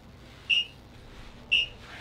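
An electronic interval timer beeping twice, short high beeps about a second apart.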